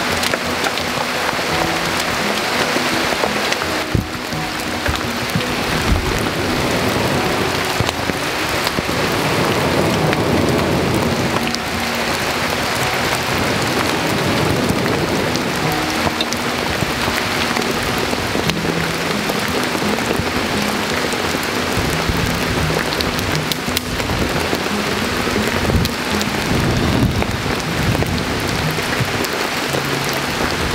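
Wood campfire crackling steadily throughout, with soft background music underneath.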